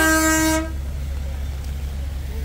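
A vehicle horn sounding one loud blast, steady in pitch, that cuts off about two-thirds of a second in. A low steady rumble follows.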